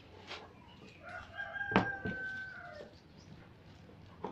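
A rooster crowing in the background: one long call of about two seconds that falls slightly at its end. A sharp knock from handling the angle grinder lands in the middle of the crow, with a few lighter clicks around it.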